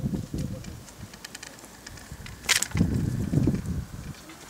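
Dry reed stems rustling and crackling against the camera, with low bumps of handling noise; a few light clicks, then one sharp crackle about two and a half seconds in, followed by more bumping.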